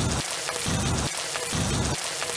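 Outdoor beach shower running, its water spraying and splashing steadily onto a person and the concrete floor, with three brief low rumbles.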